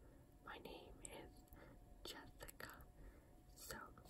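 Faint whispering by a woman, in a few short, breathy phrases with pauses between them.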